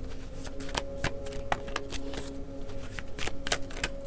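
A tarot deck being shuffled by hand: a run of soft card snaps and slaps, several a second and unevenly spaced.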